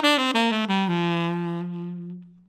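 Saxophone playing the end of a descending bebop scale with the offbeats tongued: short notes stepping down, then a long held low note that slowly fades near the end.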